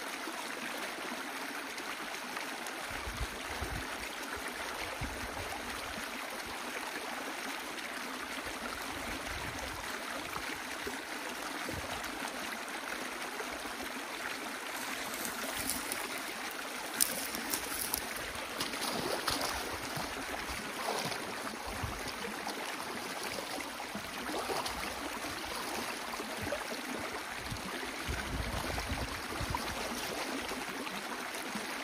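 Water rushing steadily through the breach in an old beaver dam as the dammed canal drains. A few brief sharper sounds come about halfway through.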